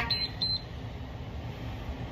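Workout interval timer giving two short high beeps about a quarter of a second apart, right at the start, marking the end of a 20-second Tabata work interval. A low steady background rumble runs underneath.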